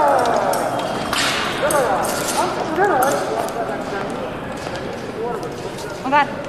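Indistinct voices with short rising and falling calls, and a few sharp clicks.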